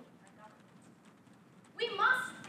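A young woman's speaking voice pauses for most of the time, leaving faint room noise with a few soft clicks, then resumes loudly near the end.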